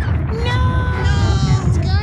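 A puppet character's long, drawn-out vocal cry lasting about a second and a half, dipping slightly in pitch, over a steady low rumble.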